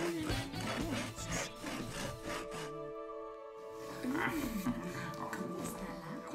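A hand saw cutting through a wooden log in rapid back-and-forth strokes over background music. The sawing stops about halfway through.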